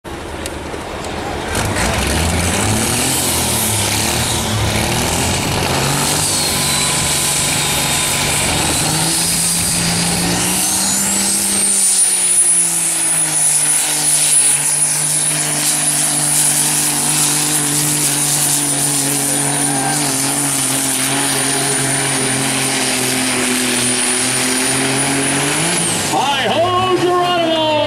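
A diesel semi tractor pulling a weight-transfer sled at full throttle. Its engine runs loud and steady from about a second and a half in, with a high whistle that climbs about ten seconds in and then holds.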